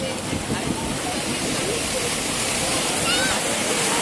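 Ocean surf washing through the shallows: a steady, loud rush of water and foam.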